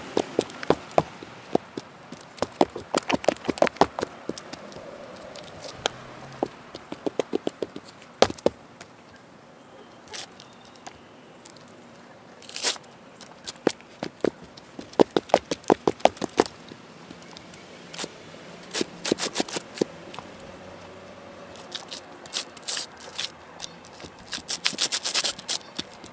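Chunky high-heeled platform booties stepping and hopping on concrete pavement: clusters of quick sharp heel clicks and scuffs with short pauses between them.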